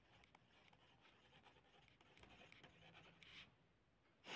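Very faint scratching of a ballpoint pen writing on ruled notebook paper, with small scattered pen ticks and a slightly louder stroke near the end.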